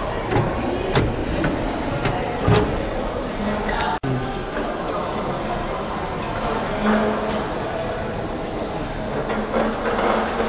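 Brass toggle levers on a copper panel being flipped by hand, giving a sharp metallic click about every half second over a busy background. About four seconds in, the sound cuts off abruptly and gives way to a room with a voice talking and background music.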